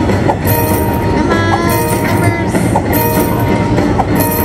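Train bonus sound effects from a Luxury Line 100 Car Train slot machine: a steady recorded train rumble with clickety-clack and a held steady tone, with a short bright chime about every second and a quarter as each rail car's credits are added to the running total.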